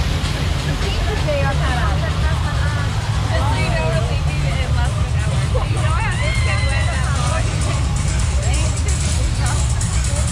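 Water rushing around a river-rapids raft, with a steady low rumble, and riders' voices talking and calling out over it; one longer call comes about six seconds in.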